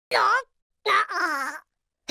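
A cartoon larva character's wordless voice: three short whining vocal sounds in a row, their pitch wavering up and down.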